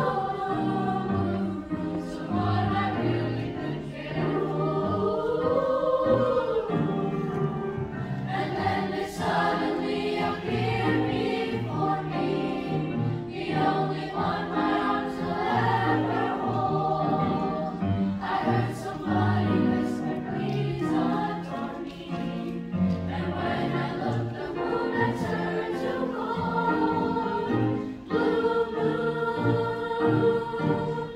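Large youth choir singing a song together, holding long notes that shift from chord to chord without a break.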